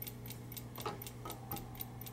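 Clockwork movement of a Sargent & Greenleaf Model #4 bank time lock ticking quickly and steadily, about four or five ticks a second. Over it come a few brass-on-brass scraping clunks from the safe boltwork as its handle is worked, a little under a second in and again around a second and a half in.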